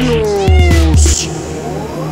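A long, drawn-out cat meow sliding down in pitch over about the first second, set into an electronic dance track with a heavy bass beat. A rising synth sweep follows in the second half.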